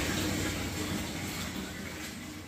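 Tap water running into a plastic tub of laundry, with hands scrubbing clothes in the water; a steady hiss.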